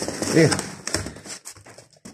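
A man's voice briefly at the start, then cardboard rustling and a few light clicks and knocks as engine parts packed in a cardboard box are handled.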